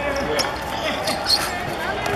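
A football being kicked about on a hard court: several sharp knocks of foot on ball, the loudest about a second and a half in, with players' voices around them.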